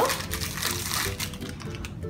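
Crinkly printed wrapper rustling and crackling as a small packet is torn open by hand, dying away near the end, over soft background music.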